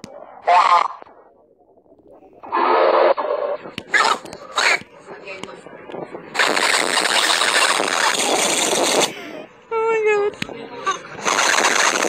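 Soundtrack of a meme video playing on a phone: short squeaky and shouted voice sounds, then two long stretches of loud, harsh, distorted noise.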